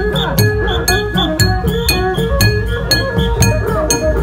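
Khmer chhayam procession music played live: drums keep a steady beat while small hand cymbals clink on it about two to three times a second, and a wavering, gliding melody runs over the top.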